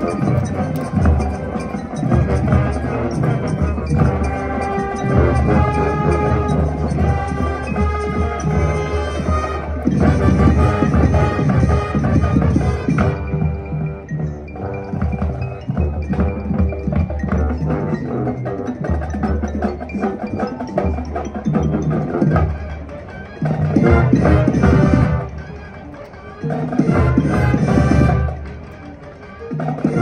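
Marching band playing a field show, winds over drums and front-ensemble mallet percussion. Near the end, two loud full-band swells with quieter gaps between them.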